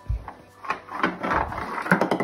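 A low thump near the start, then a busy run of knocks and clatter on wooden floorboards as a baby crawls across them and someone follows on foot.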